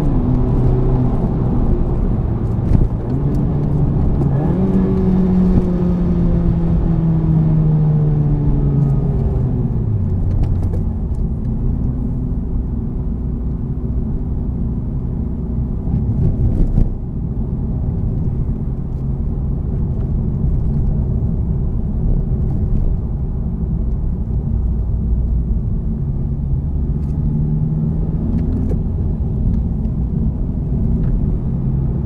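Honda Civic Type R's 2.0-litre turbocharged four-cylinder engine and road noise heard from inside the cabin while driving. The engine note rises a few seconds in, then falls away as the car slows. There is a short click about halfway through.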